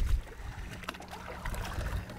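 Wind rumbling on the microphone, with a few faint clicks about halfway through.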